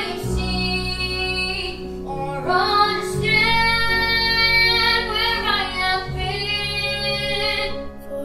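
A boy singing a slow song in long held notes over an instrumental accompaniment, whose low bass notes change about every three seconds.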